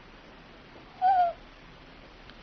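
A small eared owl gives one short, clear hoot about a second in, dipping slightly in pitch at its end.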